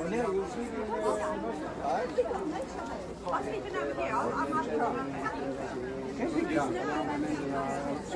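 Indistinct background chatter of several people talking, quieter than a close voice and with no words standing out.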